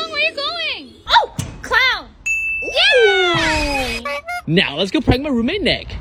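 High-pitched voices speaking in short exclamations, with a brief steady electronic tone about two seconds in.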